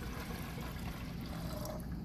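Liquid poured from glass vessels into two glass beakers, a steady splashing pour that tails off just before the end.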